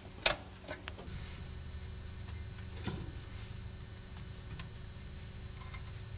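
A sharp metallic clink about a third of a second in, as the open-end wrenches come off a brass ferrule fitting on a steel fuel line, then a few faint clicks of hand handling over a low steady hum.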